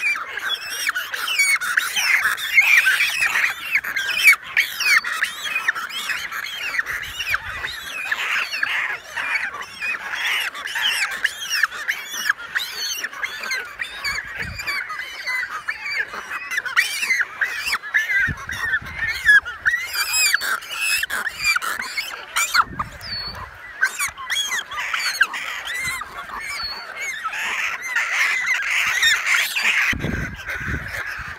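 Din of a pelican and cormorant breeding colony: many birds calling at once, short overlapping calls running on without a break.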